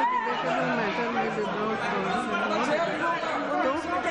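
Many members of parliament talking over one another at once in the chamber, a steady din of overlapping voices with no single speaker clear. It is the noise of members protesting and interrupting the proceedings.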